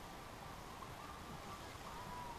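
Faint steady background hiss with no distinct event.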